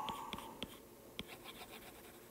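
Faint ticks and light scratching of a stylus tip on an iPad's glass screen as lines are drawn, a few small taps spaced irregularly.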